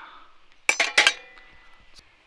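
Thin stainless-steel panels of a Skotti portable gas grill clinking against each other twice, about a third of a second apart, the second clink leaving a brief metallic ring.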